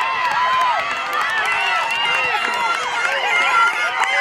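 Crowd of spectators shouting and cheering runners on, many voices overlapping at once.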